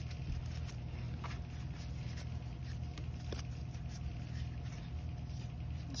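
Faint rustle and a few light ticks of baseball trading cards being handled and shuffled through in gloved hands, over a steady low hum.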